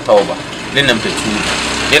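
A man's voice in short phrases, with a motor vehicle's engine running in the background, steady through the second half.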